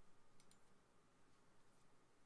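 Near silence with faint computer mouse clicks, a couple about half a second in and another near the end.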